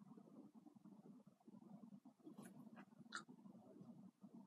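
Near silence: faint room tone, with three faint short ticks in the second half.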